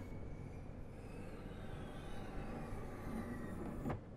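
Benchtop laboratory centrifuge: a steady low hum with faint whining tones gliding down in pitch, then a short click near the end as the lid is opened.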